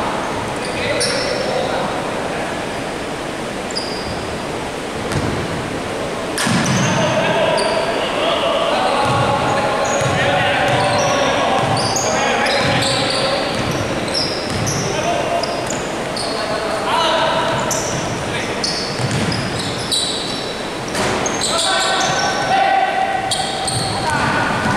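Basketball game sounds in a large hall: the ball bouncing repeatedly on the wooden court, many short high sneaker squeaks, and players' voices calling out, all echoing.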